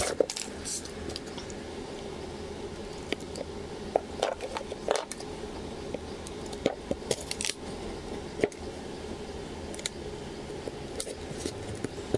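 Scattered small clicks and short scrapes of a plastic pry card being worked between a smartphone's cracked LCD and its frame to lift the screen off, over a steady low background hum.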